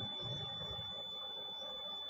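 Quiet steady background noise with a faint, steady high-pitched whine running throughout.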